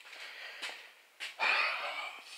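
A man's breathy exhale with no voice in it, starting just over a second in and fading near the end, after a faint rustle and a single click.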